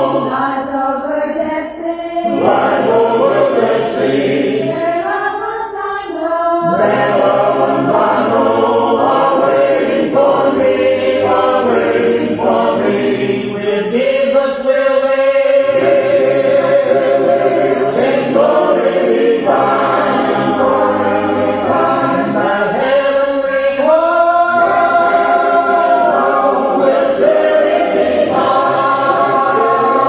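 A choir singing a gospel hymn a cappella, several voices in harmony, closing with long held chords.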